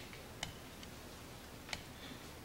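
A few short, faint clicks, about half a second in and again near the end, over a low steady room hum.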